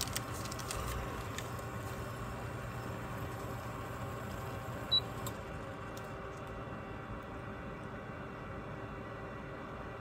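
Faint steady hum from a glass-top electric cooktop with a pot on it. About five seconds in, a short high beep sounds as a touch control is pressed, and the low hum stops just after.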